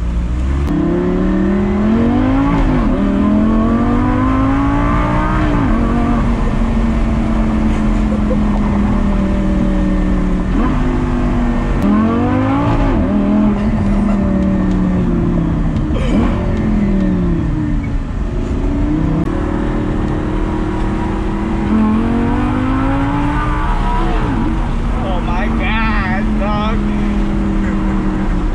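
Lamborghini Gallardo's V10 engine heard from inside the cabin, pulling under acceleration and cruising: its pitch climbs and drops back several times at the gear changes, holding steady in between.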